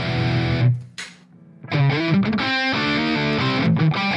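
Distorted electric guitar played through amp-simulation software, with a Tube Screamer-style overdrive switched in as a gain boost. A held chord stops about a second in, there is a short gap, then a riff of quickly changing notes.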